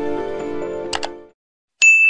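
Subscribe-button sound effects over the tail of a short music sting. The music fades out about a second and a half in, with two quick mouse clicks just after the first second. Near the end comes a bright notification-bell ding that rings on.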